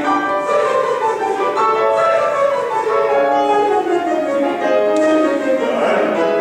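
Men's chorus singing a vocal exercise on sustained notes, several voices sounding together and moving to new pitches every second or so.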